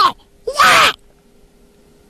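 A man's single short, breathy gasp about half a second in, as if jolted awake from a nightmare, followed by a faint steady hum.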